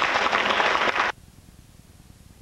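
Audience applauding, cut off abruptly about a second in, leaving a faint steady hiss.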